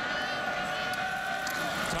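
Football stadium crowd noise, a steady din with a long held note through most of it that fades near the end.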